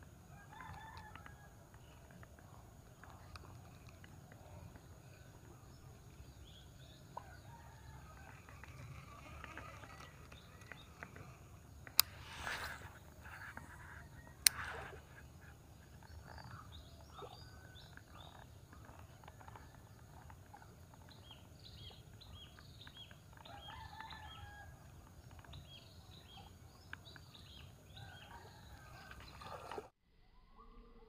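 Rooster crowing at a distance now and then over a faint steady background, with small birds chirping, thickest in the last several seconds. Two sharp clicks about two and a half seconds apart near the middle are the loudest sounds.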